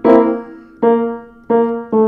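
Welmar upright piano: a note struck three times, each ringing on and fading away instead of being stopped short, the ring left when a damper is not quite strong enough to silence the string.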